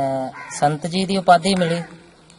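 A man talking in Punjabi.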